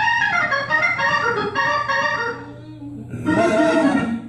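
Church organ playing sustained chords that move through several changes, dropping back briefly and swelling louder again near the end.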